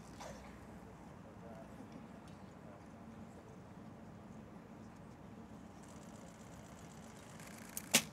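Quiet, steady background on the range, then near the end one sharp snap as a recurve bow is shot: the string releasing the arrow.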